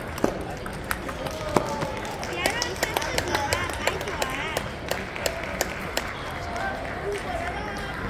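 Table tennis ball clicking sharply off paddles and table during a rally, then a scatter of further bounces, in a large echoing hall with people's voices talking in the background.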